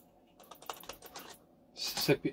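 Computer keys tapped in a quick string of faint clicks, followed near the end by a louder, fuller burst of sound.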